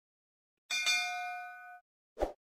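Notification-bell 'ding' sound effect: a sharp strike about two thirds of a second in, then a bell tone of several pitches ringing for about a second before it cuts off.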